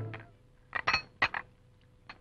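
China coffee cups and saucers clinking: a handful of light, sharp clinks about a second in, one of them ringing briefly.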